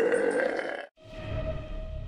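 A long, drawn-out vocal sound that cuts off suddenly about a second in, followed by a short video-transition sound effect: one steady tone over a low rumble.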